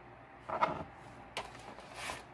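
A 473 ml aluminium soda can being handled and turned on a tabletop: a few brief scrapes and knocks, about half a second in, about a second and a half in, and again near the end.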